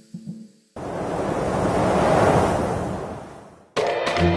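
A rushing, wind-like noise swells up about a second in and fades away over the next few seconds, after a few short plucked notes; music starts abruptly just before the end.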